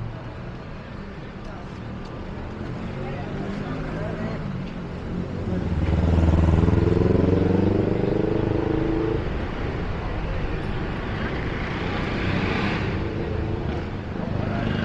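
Busy city street ambience: a motor vehicle's engine runs close by, loudest from about six to nine seconds in, with a rising sound near the end and people talking around it.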